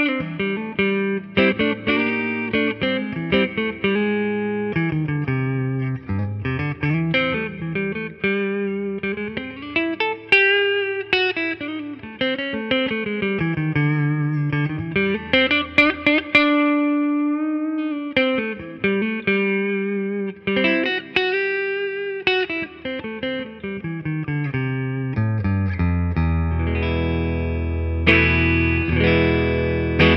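1973 Fender Telecaster Deluxe electric guitar played on its neck-position Lollar wide-range humbucker. It plays a clean, melodic single-note lead with bends and slides, then settles into held low chords over the last few seconds.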